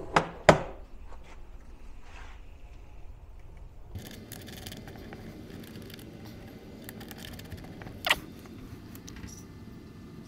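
Small clicks, taps and scrapes of charging leads being handled and connected at a battery's terminals, with two sharp clicks at the very start and another about eight seconds in. A steady low hiss sets in about four seconds in.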